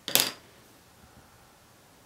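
A brief clatter as a metal drawing compass and pencil are picked up and handled, right at the start. Then quiet room tone with a couple of faint ticks about a second in.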